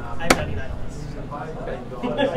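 A single sharp click about a third of a second in: a blitz player pressing the chess clock to end his move. Voices chatter underneath.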